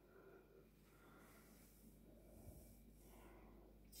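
Near silence: faint room tone with soft, barely audible hiss.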